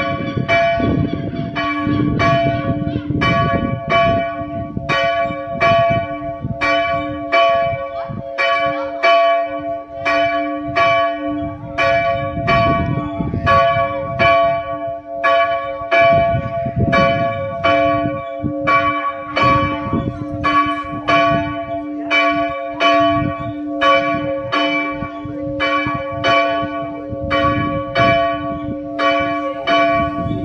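The Zandvoort Dorpskerk's church bell, rung by hand with a rope: the swinging bell's clapper strikes in an even, steady rhythm, each stroke ringing on into the next over a long, sustained hum.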